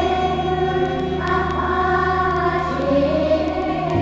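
Choral music: a choir singing long held chords over a steady low drone, moving to a new chord about a second in.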